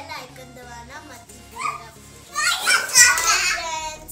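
A young girl talking over background music, her voice rising to a loud, excited call in the last second and a half.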